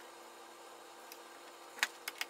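Hands adjusting the plastic cursor on a Festool Domino joiner's fence: a single light click near the end over a faint steady room hum.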